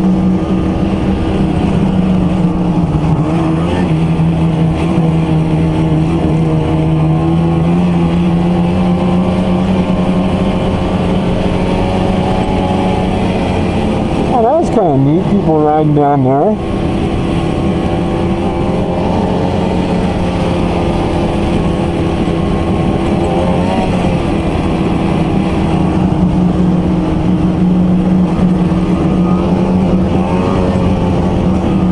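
Ski-Doo two-stroke E-TEC snowmobile engine running at trail speed, with wind on the microphone. Its pitch sags slightly and climbs back, and about halfway through it wavers rapidly up and down for a couple of seconds before settling again.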